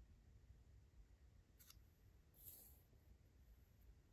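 Near silence, with a faint click about one and a half seconds in and a brief soft rustle a second later as a paper word card is moved on a whiteboard.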